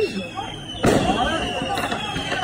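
A firework going off with a sharp bang a little less than a second in, amid people talking.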